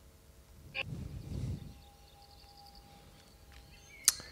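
Quiet hall room tone through the sound system, with a faint steady hum. There is a single click and a short, soft low noise just under a second in.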